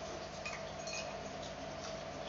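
Metal spoon and fork clinking against a ceramic bowl: a couple of light ringing clinks in the first second, over a steady background hum.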